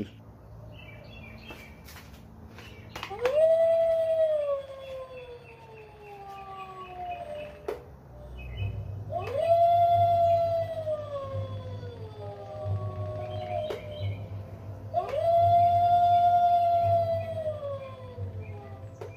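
Animated Halloween skeleton wolf prop playing its recorded wolf howl three times, each a long call that rises briefly and then slides down in pitch. A low hum runs underneath from about halfway on.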